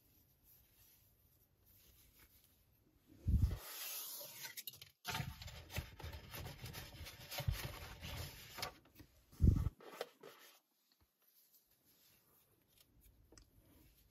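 Handling sounds of crochet work: yarn and a crochet hook rubbing and rustling in the hands, with a dull bump about three seconds in and another about nine and a half seconds in.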